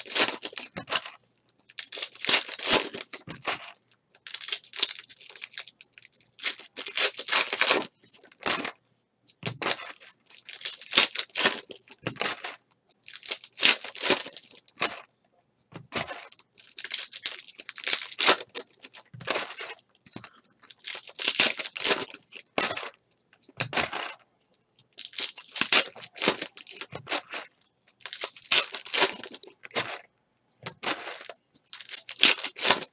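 Foil trading-card pack wrappers tearing and crinkling, and cards being slid and shuffled in the hands, in short scratchy bursts every second or two.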